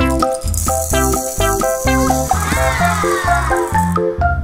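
Light background music with a bass line, over the dry rattle of tiny candy sprinkles poured from a small cardboard box into a toy bowl, starting about half a second in and stopping shortly before the end.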